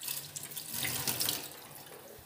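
Tap water running onto a wire refrigerator shelf in a stainless steel kitchen sink, rinsing it off. The water comes in suddenly and pours steadily.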